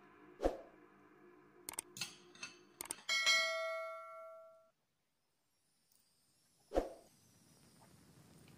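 A few light clicks, then a bell-like ding from a subscribe-button sound effect, which rings out for about a second and a half and cuts off abruptly. A dull knock comes near the end.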